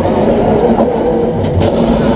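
Electric race car accelerating, heard from inside the stripped cabin: its twin 11-inch WarP DC electric motors running under load with drivetrain and road noise, loud and fairly steady.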